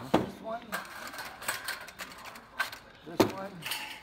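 Framed windows knocking and clattering against each other as they are tipped and shuffled through in an upright store rack: a run of sharp knocks, the loudest just after the start and another about three seconds in.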